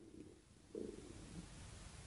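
Near silence in a pause between spoken phrases, with one faint, short, low sound a little under a second in.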